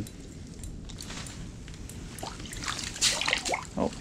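A hooked fish splashing and thrashing in the water of an ice-fishing hole, with a louder burst of splashing late on as it is pulled out onto the ice.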